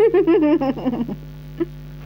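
A woman laughing: a run of quick, high giggles that falls in pitch and stops about a second in.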